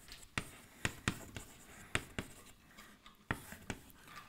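Chalk writing on a blackboard: a string of sharp chalk taps and short scrapes as the words "Hard Parts" and an arrow are written.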